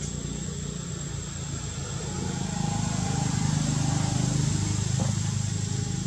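Low hum of a motor vehicle engine, swelling louder about two seconds in and easing off near the end, with a thin steady high tone throughout.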